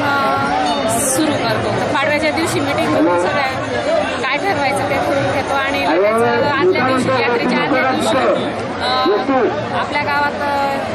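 A woman speaking into a microphone, with crowd chatter behind her.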